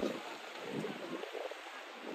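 Outdoor park ambience: a rushing noisy haze with faint distant voices.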